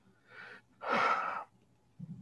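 A person's audible breath, a short faint one and then a longer, louder one of about half a second.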